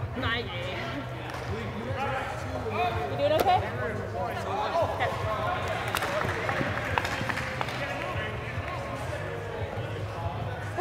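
Indistinct shouts and calls of players echoing in a large indoor sports hall, over a steady low hum. There are a couple of faint sharp knocks in the second half.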